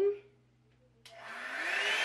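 Revlon One-Step hot-air brush dryer starting up about a second in: a rush of air with its fan motor's whine rising in pitch as it spins up.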